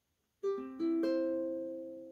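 Ukulele played by hand: its strings sound one after another, about half a second, just under a second and a second in, building a chord that is left to ring and slowly fade.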